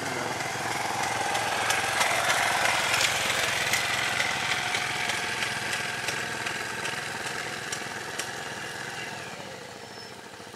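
A small vehicle engine idling steadily. It grows a little louder over the first few seconds, then eases off near the end.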